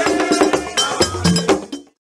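Percussive music with sharp, regular strikes over a bass line and pitched notes, fading out and stopping just before the end.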